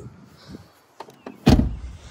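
2013 Ford F-150 pickup's door shut about one and a half seconds in: a single heavy thud, after a few faint clicks.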